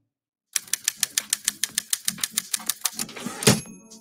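Typewriter-style typing sound effect: a rapid run of sharp key clicks, about eight a second, starting half a second in and lasting about two and a half seconds. It ends with a single loud hit about three and a half seconds in, as part of an edited transition onto a title slide.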